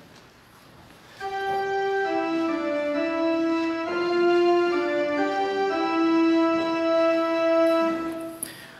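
Church organ playing a short introduction of held, steady chords that change a few times, starting about a second in: the lead-in to the congregation's sung introit.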